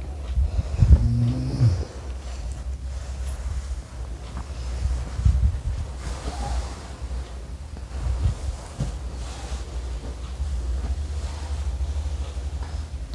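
Kitchen knife slicing a carrot into rounds on a plastic cutting board, over a steady low rumble. A short low-pitched hum comes about a second in.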